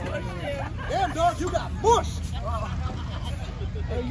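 Several voices calling out and talking over one another around a wrestling ring, with a steady low rumble underneath.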